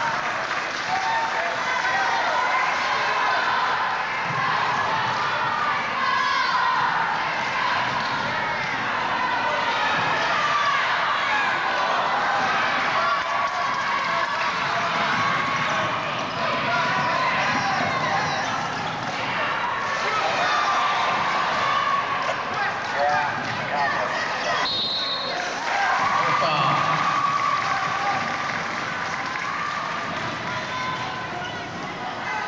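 Gym sound of a basketball game: a steady mix of voices from the crowd and court, with a basketball bouncing on the hardwood floor. A short high whistle sounds about 25 seconds in, the referee stopping play before a free throw.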